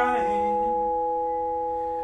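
Vibraphone chord ringing out and slowly fading, with no new strike. A brief low sung note slides down near the start.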